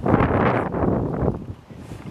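Wind buffeting the camera microphone in a strong gust that dies down about a second and a half in.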